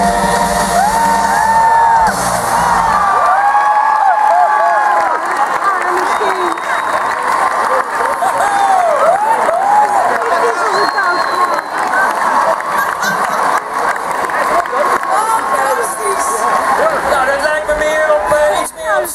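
A live band's song stops about three seconds in, and a large audience cheers and whoops.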